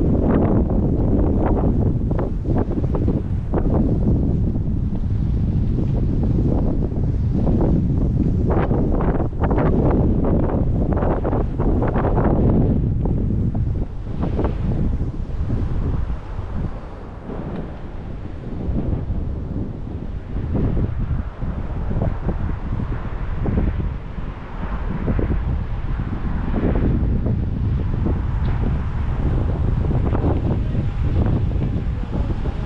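Wind buffeting the microphone in gusts, a heavy low rumble that eases somewhat partway through and then picks up again.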